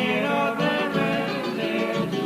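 Two acoustic guitars playing an instrumental passage of a Cuyo tonada: a plucked melody over chord accompaniment.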